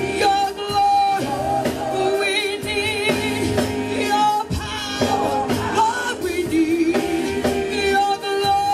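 Live gospel praise singing: a group of women singers on microphones, held notes with vibrato, backed by a church band with drums.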